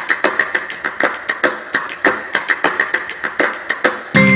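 Felt-tip marker writing on paper: a quick run of short, scratchy, squeaky strokes, about six or seven a second.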